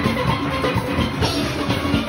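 Full steel orchestra playing: many steel pans ringing out pitched notes over drums keeping a fast, steady beat.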